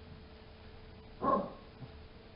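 A single short dog bark a little over a second in.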